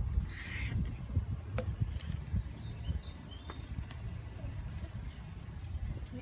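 Outdoor garden ambience: a steady low rumble with a few sharp clicks and several faint, short bird chirps.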